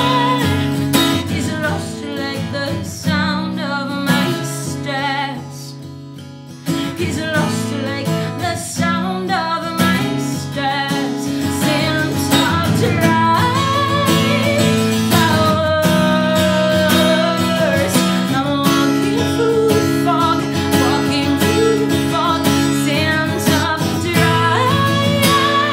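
A woman singing live with her own strummed acoustic guitar. The song drops to a quieter passage about five to six seconds in, then picks up again.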